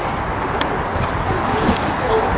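Hoofbeats of a Friesian horse loping on an arena's sand footing, over a steady outdoor background noise.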